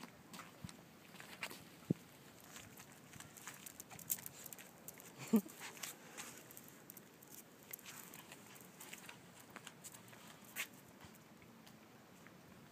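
Faint scattered clicks and scuffs of a chihuahua playing with a plush duck toy and of sandalled footsteps on paving, with one short dog vocalisation about five seconds in.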